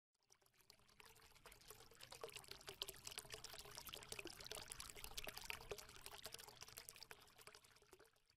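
Faint, dense, irregular crackling clicks that swell in over the first two seconds and fade out near the end, a sound effect under an animated logo intro.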